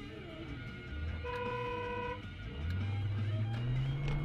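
Dashcam audio from inside a car: music playing, a steady tone lasting about a second, then the car's engine rising in pitch as it accelerates near the end.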